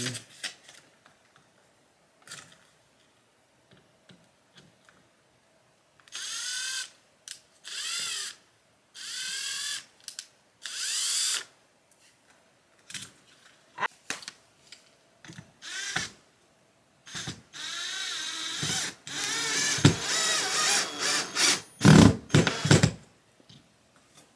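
Power drill run in four short bursts in quick succession, each winding up and down in pitch, then a longer, louder stretch near the end, drilling holes for wall anchors. Small knocks and taps fall between the bursts.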